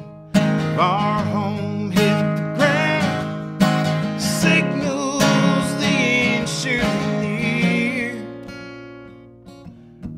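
Steel-string acoustic guitar with a capo, strummed in a slow blues song, with a man's voice singing over it. The strumming and voice die away over the last two seconds.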